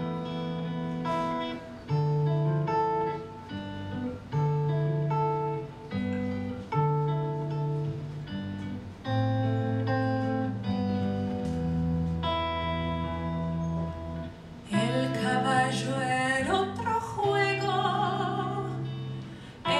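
Piano playing a slow instrumental interlude of separate, held notes. About fifteen seconds in, a woman's singing voice comes back in over the piano.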